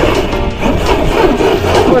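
Large electric RC monster truck's motor whining up and down in pitch as its tyres spin and churn through grass and dirt.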